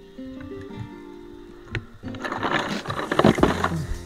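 Background music with held notes. Just before halfway there is a single click, and then a loud rustling and clattering of ice and a plastic bag as a snapper is pulled out of a cooler.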